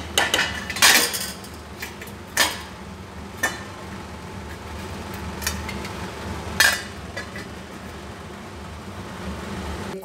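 Metal utensils knocking against a steel kadhai: a few sharp, separate clinks spread through, the loudest about a second in, over a steady low hum.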